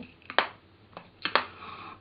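A few sharp clicks of plastic makeup compacts being handled: lids snapping shut and cases knocking on the table. One click comes near the start, and a quick double click follows about a second later.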